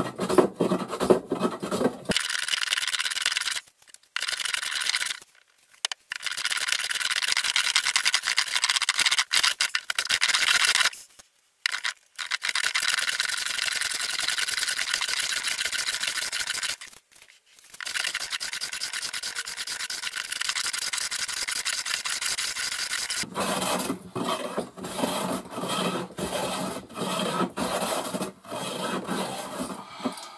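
Metal hand plane taking rapid, repeated cutting strokes along a rough wooden beam, a run of rasping shavings. For much of the middle the sound is thinner and hissing, with a few short breaks between runs of strokes.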